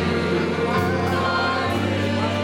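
Gospel music: a church choir singing over instrumental accompaniment, with held bass notes that change twice.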